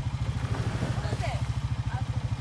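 An off-road vehicle engine idling steadily with an even, rapid pulse.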